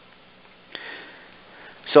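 A man drawing a breath in through his nose, audibly, starting about three-quarters of a second in and fading over about a second, over faint steady hiss from the microphone line. He starts to speak just at the end.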